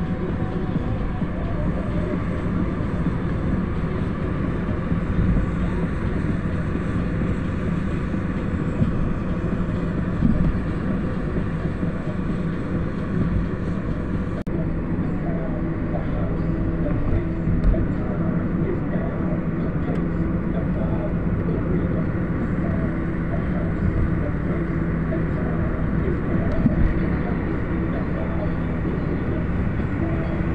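Steady engine and road noise heard from inside a moving vehicle's cabin, a continuous low rumble and hum.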